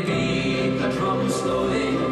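Recorded music of several voices singing held notes together, played back in the lecture hall.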